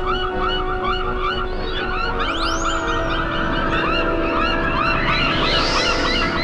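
Cartoon soundtrack of a flock of small birds chirping and twittering over held orchestral notes, with swooping glides that rise and fall in pitch, one about two seconds in and another near the end.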